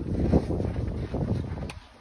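Wind buffeting the phone's microphone: an uneven low rumble in gusts, with a small click near the end before it drops away.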